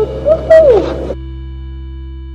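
A woman's voice giving a loud hooting "whoo", rising and then sliding down in pitch, cut off suddenly about a second in. A steady held tone follows.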